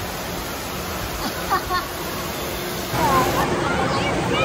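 Indoor water park din: a steady rush of water with a hubbub of voices and scattered children's shouts. It gets louder about three seconds in.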